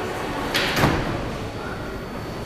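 R160 subway car's sliding doors closing with a sudden thump about half a second in, over steady station background noise.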